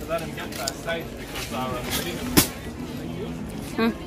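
Faint voices of other people talking among steady background noise. One sharp click stands out about two and a half seconds in.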